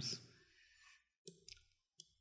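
A few faint computer mouse clicks in the second half, after the last word of narration fades.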